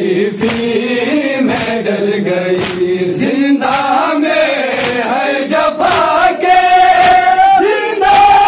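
A group of men chanting an Urdu noha, a Shia lament, in unison, over a steady beat of hands slapping chests (matam) a little under two strikes a second. Past the middle, the voices rise to a higher note that they hold to the end.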